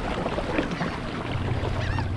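Water sloshing and splashing close to the microphone as a hooked tarpon rolls up at the surface, with wind on the mic. A low steady hum comes in near the end.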